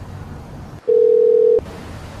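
Ringback tone of an outgoing call on a Samsung smartphone: one steady single-pitch tone lasting under a second, starting just under a second in, the sign that the dialled phone is ringing.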